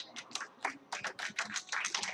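A congregation starting to clap: scattered claps at first, quickly thickening into steady applause.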